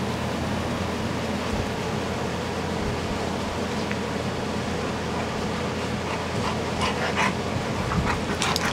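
Two dogs play-wrestling, one on its back mouthing the other, over a steady background hiss. In the last second or two comes a run of short, breathy bursts from the dogs.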